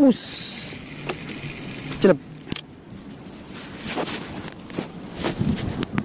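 Fishing line hissing off a spinning reel as the rod is cast, a brief high hiss at the start, followed by a few faint clicks.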